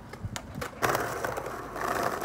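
Skateboard wheels rolling over stone paving: a rough, loud rumble that starts abruptly about a second in and keeps going, after a few light clicks.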